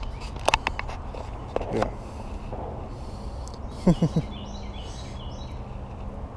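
Handling noise close to the microphone as hands work a spinner's hook out of a small sunfish: a few sharp clicks early on, with faint bird chirps in the second half over a steady low background hum.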